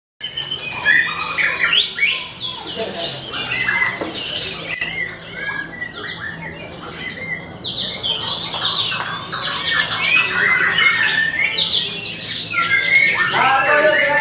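Many caged songbirds singing at once, a dense overlapping chorus of rapid chirps, warbles and whistled phrases, with men's voices calling out over it.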